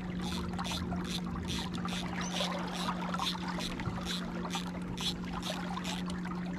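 A stream of water pouring and splashing onto the water surface beside the boat's transom, in quick pulses about three a second, over a steady low hum.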